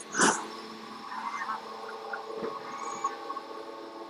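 Documentary soundtrack in a scene transition: a short whoosh just after the start, then quiet steady held tones with a few faint chirps.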